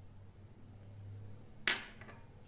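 A single sharp glass-on-glass knock about three quarters of the way through, with a short ring: a small glass bowl struck against a glass mixing bowl as sticky gulkand is tipped out of it.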